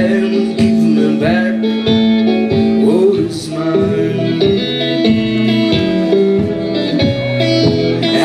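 Solo electric blues guitar played live through an amplifier: picked notes and chord stabs in a steady rhythm over a sustained low note.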